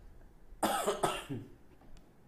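A man coughing twice in quick succession, about half a second apart.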